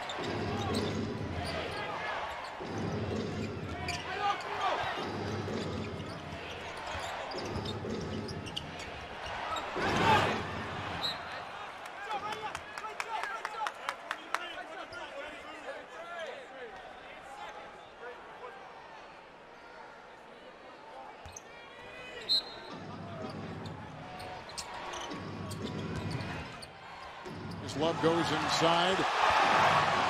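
Basketball game sound in an arena: a ball bouncing on the hardwood court among scattered voices and crowd noise, which swells near the end.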